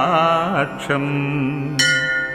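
Male voice chanting a Sanskrit stotram in a melodic, Carnatic-style line, with a long held note in the second second. Near the end a bell is struck and rings on.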